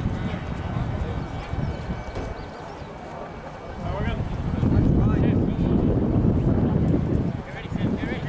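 Wind rumbling on the microphone, swelling loudly for about three seconds past the middle, with faint distant shouts from players on the field.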